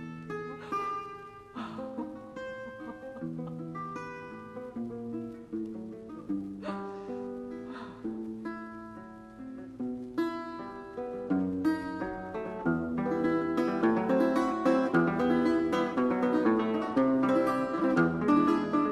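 Russian seven-string acoustic guitar playing solo, single plucked notes and short runs at first, then growing faster and louder from about halfway through.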